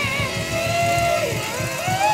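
A woman singing a long held, wavering note that then climbs to a higher one, over upbeat band accompaniment with a steady drum and bass beat.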